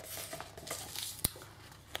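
Rustling of glossy magazine pages as the magazine is handled and turned to a page, with a single sharp click a little past halfway.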